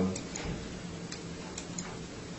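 Quiet room tone with a low hum and a few faint, irregular clicks and ticks, about five of them spread across two seconds.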